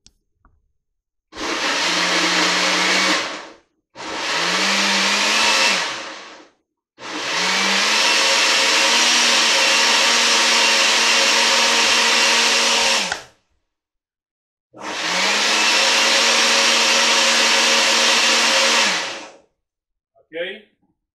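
Countertop blender running in four separate bursts, blending chopped ginger with water. The motor spins up at each start, then runs steadily for between two and six seconds; the longest run is the third, and there are short pauses between runs.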